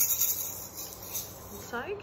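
Orange plastic maraca shaken, rattling quickly for about a second and then fading out.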